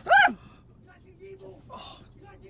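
A man's laughter ending in a loud gasp that falls steeply in pitch, right at the start. It is followed by quiet, faint breathy sounds and a short hiss of breath near the end.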